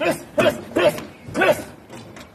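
A dog barking in a quick run of short barks, about three a second, each rising and falling in pitch.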